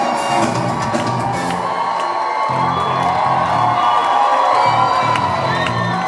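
Indie rock band playing live through a concert PA, with bass and drums keeping a steady beat under sustained guitar or vocal tones. The crowd cheers over it, heard from among the audience.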